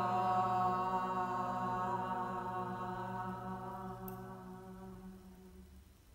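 A group of voices holding one long sung vowel together on a steady pitch, chant-like, slowly fading out over about five seconds.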